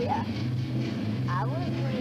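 Indistinct background voices over a steady low hum, with a short rising-and-falling vocal sound about one and a half seconds in.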